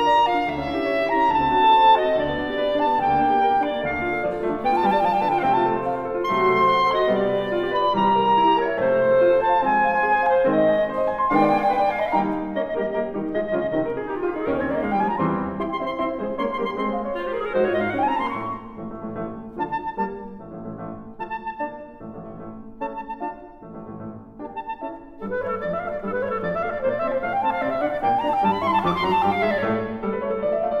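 Clarinet and piano playing a fast classical sonata movement, a Molto allegro: quick running scales that sweep up and down over the piano. About two-thirds of the way in there is a softer stretch of short, detached notes, then the fast runs return.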